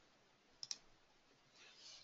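Near silence: room tone, with two faint clicks close together about two-thirds of a second in.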